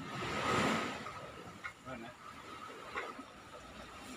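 Outdoor field sound with a rush of noise in the first second, then faint voice fragments and a few light knocks, over a faint steady high tone.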